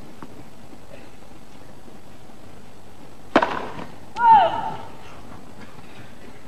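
Tennis serve: one sharp crack of racket on ball. About a second later a line judge calls 'Fault!', one drawn-out call falling in pitch, meaning the first serve has landed out.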